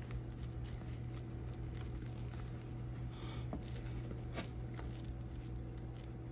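Soft rustling and light taps of a paper towel being pressed and rubbed with fingertips over a glued piece of cardstock, over a steady low hum.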